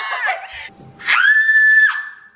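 Two women screaming with excitement: a wavering yell, then one long, high, steady scream held for about a second.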